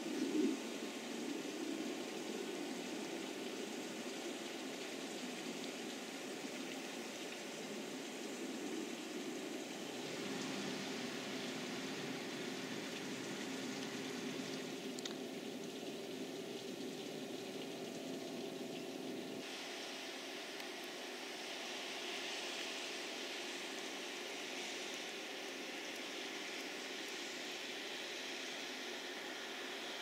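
Steady outdoor background hiss, with no voice or distinct event, that changes abruptly in tone about ten seconds in and again just before twenty seconds.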